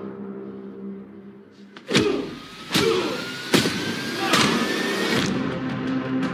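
Trailer score and sound design: a held low note fades out, then about two seconds in come five heavy hits roughly 0.8 s apart over a slowly rising whine.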